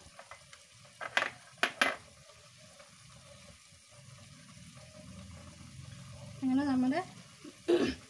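Metal cookware clinking twice, a little over half a second apart, then a low steady hum, a brief voice, and one more clink near the end.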